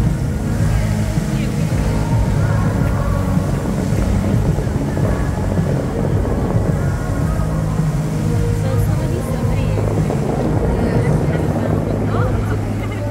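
Fountain-show music playing loudly over outdoor loudspeakers, with low held notes, over the steady hiss of the fountain's water jets and spray.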